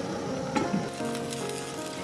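Water heating in a lidded wok, a steady hiss, under soft background music with long held notes.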